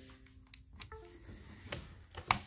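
Faint laptop notification chime: steady, bell-like tones die away in the first moments, and a shorter chime sounds just before a second in, after a storage card is ejected. A few light clicks are heard along with it.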